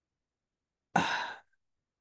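A woman's single short, breathy "uh", sigh-like, about a second in, with silence before and after.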